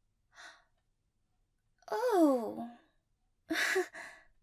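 A woman's wordless vocal sounds: a faint breath, then, about two seconds in, a drawn-out voiced sigh that slides down in pitch, and a quick sharp breath near the end.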